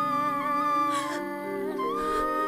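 Background film score: a flute holding a long high note over a soft bed of sustained low chords. The flute note falls away a little after a second in and comes back in just before the end.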